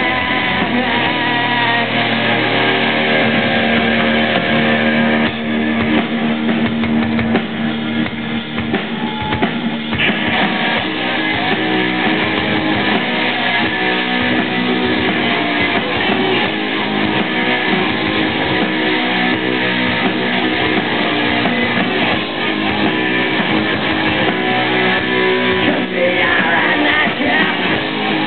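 Live rock band playing an instrumental passage, with guitar over a drum kit. The recording sounds dull and muffled. The sound grows fuller and brighter about ten seconds in.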